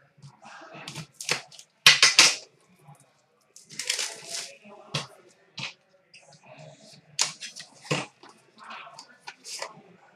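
A trading card pack being cut open and its cards slid out: a string of short rustles, scrapes and crinkles of wrapper and card. The longest and loudest come about two and four seconds in.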